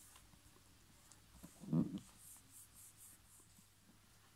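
Paper being handled on a notebook page: printed paper cutouts slid and pressed down, with soft rustles in the second half. A brief low thump about halfway through is the loudest sound.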